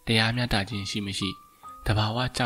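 A man reading aloud in Burmese, with soft background music holding steady sustained notes under and between his phrases.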